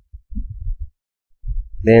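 Irregular low rumbles and bumps on a close microphone for about a second, a short pause, then a man's voice starting to speak near the end.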